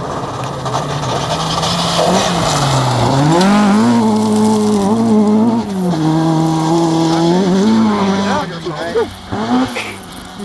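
A rally car's engine at full throttle on a gravel stage as it approaches and passes. The note climbs, then drops back at each gear change, and breaks up and fades near the end as the car drives away.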